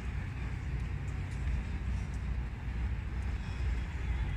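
Outdoor city ambience: a steady low rumble, with a few faint clicks.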